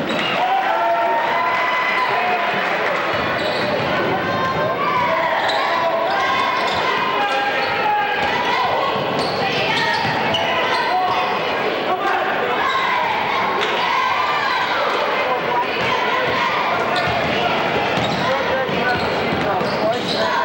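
A basketball bouncing on a hardwood gym floor during live play, with many voices calling and shouting throughout, echoing in the gym.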